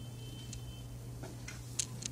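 Faint rustling and a few small ticks of a cloth drawstring bag being untied and pulled open, over a steady low hum.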